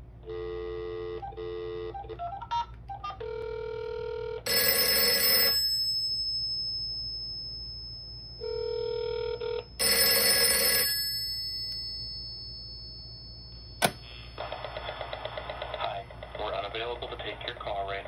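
Short electronic tones as the extension dials, then a steady ringback tone before each of two rings of the Western Electric 302 rotary telephone's bell. Each ring lasts about a second and dies away over a few seconds. A sharp click near the end as the Panasonic EASA-PHONE KX-T1505 tape answering machine picks up, and its taped outgoing greeting starts to play.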